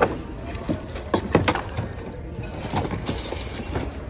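Mixed secondhand goods clattering and rustling as hands dig through a bin, with a few sharp knocks about a second in, over faint background music.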